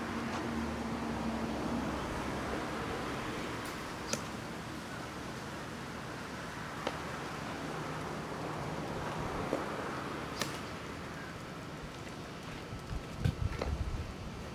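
Steady outdoor background noise with no speech. A few faint, sharp clicks are scattered through it, and a short cluster of low thumps comes near the end.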